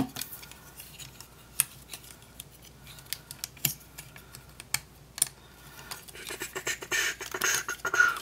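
Plastic parts of an iGear UFO transforming toy figure being worked by hand: scraping and rustling, with several separate sharp clicks as joints and panels snap into place. The handling grows busier near the end.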